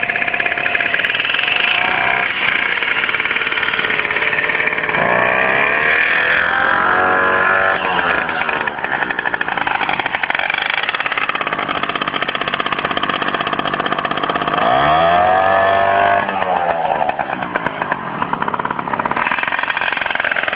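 Romet motorbike engine running with a buzzy note, revved up twice: the revs climb about five seconds in and drop back a few seconds later, then rise and fall again about three quarters of the way through.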